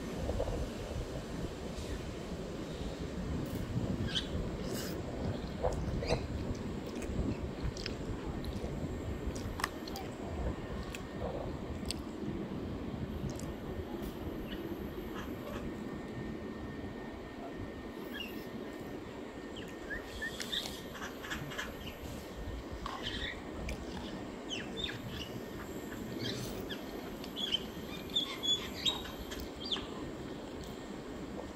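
Outdoor ambience: a steady low rumble with scattered light clicks and scrapes of plastic cutlery against a foam noodle bowl. A few short high bird chirps, clustered near the end.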